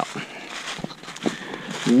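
Footsteps rustling and crunching through dry leaf litter as someone walks on a wooded slope, with a few soft steps.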